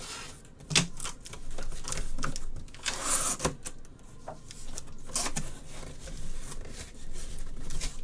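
Cardboard shipping case being handled and opened by hand: irregular knocks and clicks of cardboard, with a longer rasping rustle about three seconds in.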